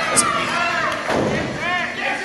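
Voices and shouts echoing in a gym around a wrestling ring, with a sharp smack shortly after the start and a dull thud on the ring mat about a second in.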